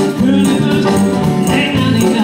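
A big band playing live, with saxophones, brass, electric guitar, keyboard, congas and drums, and a woman singing with it.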